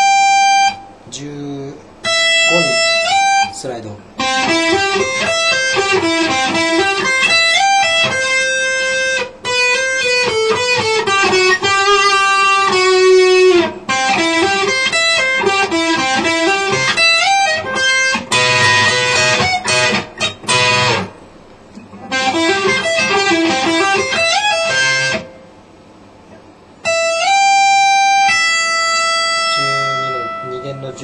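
PRS electric guitar playing an E minor étude: fast picked single-note runs in phrases broken by short pauses, with a denser, more smeared passage about two-thirds of the way through.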